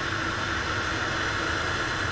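Steady cockpit noise of a PAC Cresco agricultural turboprop on approach with power eased back: engine, propeller and airflow blend into an even hiss with a faint low drone under it.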